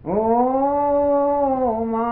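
Solo unaccompanied male voice singing an alabado, a Hispano penitential hymn, in a slow drawn-out style: he slides up into one long held note with a slight dip in pitch near the end. A steady low rumble from the old analog disc recording runs underneath.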